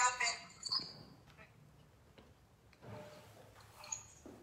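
A woman's voice trailing off at the start, then a near-silent pause with faint room tone. A faint, brief murmur of voice comes about three seconds in, and a small click just before the end.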